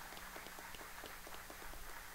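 Applause: many people clapping in a steady run of hand claps.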